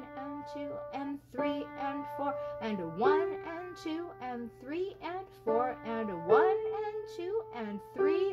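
Upright piano playing a slow single-line melody in D minor, one held note after another, with a voice counting the beats aloud over it ("one and two and three and four").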